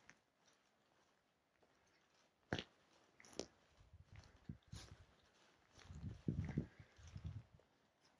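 Footsteps through mossy forest undergrowth: two sharp twig snaps a second apart, then a run of soft, dull thuds and rustles near the end.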